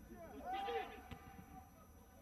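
Faint men's voices shouting and calling, a few brief cries about half a second to a second in, against a thin open-stadium background.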